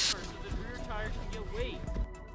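A burst of air hissing from a tire valve as the tire is let down, cutting off suddenly right at the start, followed by background music with a voice over it.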